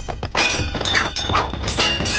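Fight-scene sound effects: a rapid series of sharp hits and short metallic clangs, like blades striking, over dramatic action score music.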